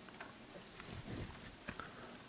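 Quiet room with a few faint, short clicks, the sound of a computer mouse being clicked and scrolled.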